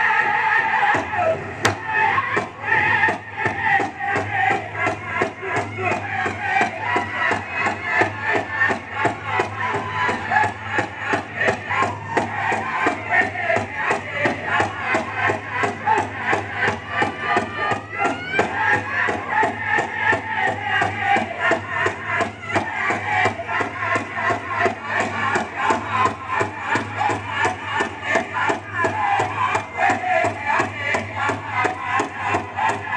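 Powwow music for the dance: a drum struck in a fast, steady beat with voices singing over it.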